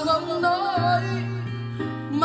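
A man singing karaoke into a handheld microphone over a backing track with guitar and steady bass notes, both played through a Best BT-6920 karaoke trolley speaker with a 50 cm bass driver.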